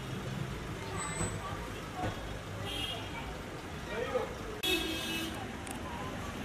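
Car engines idling with a steady low rumble, under indistinct voices, with a brief burst of higher-pitched noise near the end.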